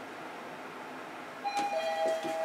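Mitsubishi NexCube elevator car travelling down with a steady hum, then about one and a half seconds in its arrival chime sounds: two ringing tones, the second lower, as the car nears its stop.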